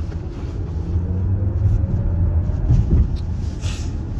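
Steady low rumble of a car's engine and road noise heard inside the cabin through a phone microphone, with a short hiss near the end.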